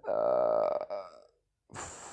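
A man's low, drawn-out vocal sound lasting under a second. It is followed by a brief total dropout and then a steady hiss.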